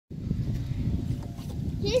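Wind buffeting a phone microphone: a low, uneven rumble. A high-pitched young voice starts near the end.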